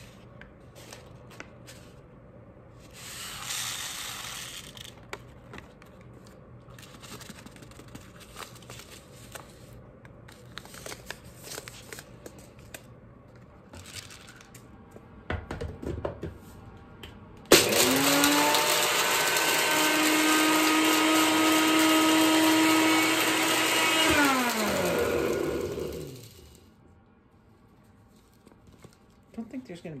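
NutriBullet personal blender grinding dried paprika peppers into powder: the motor starts suddenly a little past the middle, runs steadily for about six seconds, then winds down, its pitch falling as the blades coast to a stop. Before it, quieter rustling and handling sounds.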